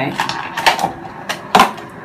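Clear plastic packaging being handled: a few short, sharp plastic clicks and crackles at irregular moments, the loudest about one and a half seconds in.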